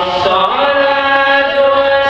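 Islamic devotional chanting: a voice holds long sustained notes and glides up into a new held note about half a second in.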